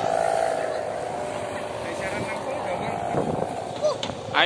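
Outdoor crowd chatter, with a steady droning hum that fades out during the first second.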